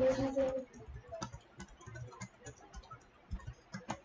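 Typing on a computer keyboard: scattered key taps, irregular and a few per second, after a brief voice at the very start.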